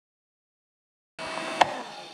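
Silence for just over a second, then a food dehydrator's steady fan hum cuts in, with one sharp click soon after.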